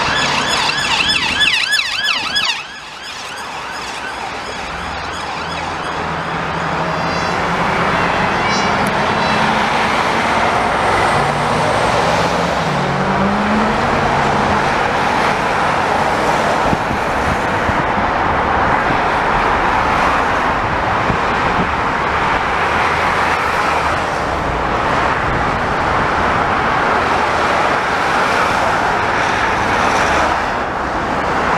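An emergency vehicle siren on a fast warble, cut off suddenly about two and a half seconds in. Steady road traffic noise from cars and vans passing follows, with a faint siren briefly heard again a few seconds later.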